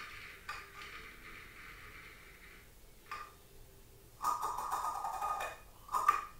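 A person's breathing during a held yoga twist: a long exhale that fades over the first two seconds or so, then a louder breath about four seconds in.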